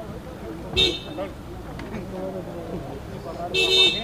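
Car horn honking twice over people's voices: a short toot about a second in, then a longer, louder one near the end.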